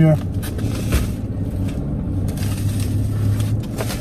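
Car engine idling, a steady low hum heard inside the cabin, with a few light taps and rustles as plastic mailer packages are handled.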